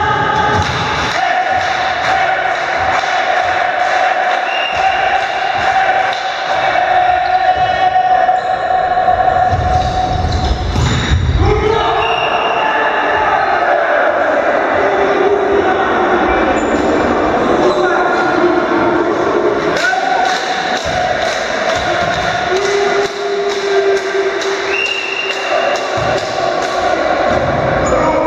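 Volleyball being struck and bouncing on a gym floor, sharp knocks with the heaviest cluster about ten seconds in, amid players' voices, all echoing in a large sports hall. Long steady tones are held underneath for several seconds at a time.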